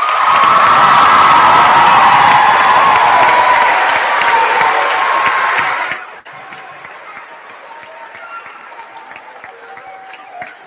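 Audience applause in a school gymnasium after a choir song, loud for about six seconds, then dying away sharply to a quieter crowd murmur with some talk.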